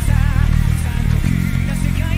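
Five-string electric bass played with the fingers, a line of repeated low notes that change pitch every fraction of a second, along with a full band recording that carries a wavering melody line above it.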